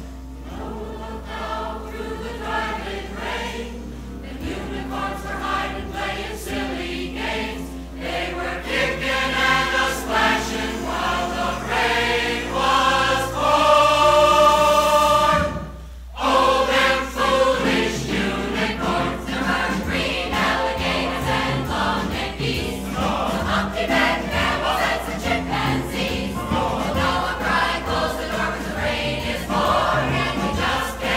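Live recording of a large mixed amateur chorus singing with accompaniment. A loud held chord breaks off abruptly about sixteen seconds in, and after a brief pause the singing resumes, over a steady low hum.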